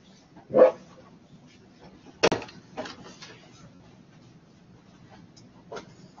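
Scattered short knocks and clatters in a room, the two loudest about half a second and two seconds in, with a smaller one near the end.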